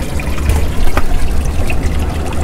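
Seawater trickling and sloshing among the rocks of a rock pool, with a low rumble underneath and a couple of faint knocks about half a second and a second in.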